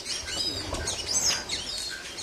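Small songbirds chirping: a quick, overlapping run of short high chirps and slurred whistles.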